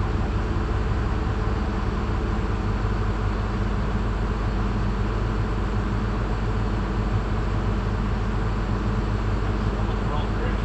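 A steady, low mechanical drone of a motor or machine running at an even pitch and level, with no knocks or changes.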